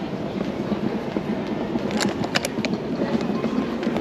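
Hard wheels of a rolling carry-on suitcase running over a polished stone tile floor: a steady rumble, with sharp clicks from about two seconds in as the wheels cross the tile joints.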